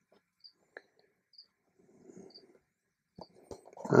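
Quiet room with a few faint, short clicks and a soft low sound a little after two seconds in; a voice begins at the very end.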